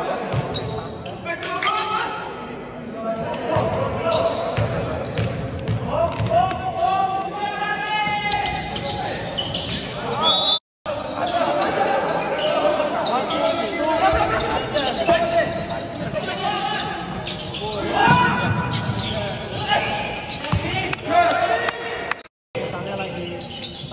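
Live basketball game sound in a large gym hall: a ball bouncing on the hardwood floor, with players shouting and calling out. The sound drops out briefly just under eleven seconds in.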